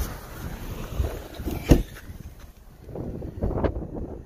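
A car door on a 2019 Honda Civic shutting with one sharp thump a little under two seconds in, over a low wind rumble on the phone microphone; a few softer bumps follow near the end.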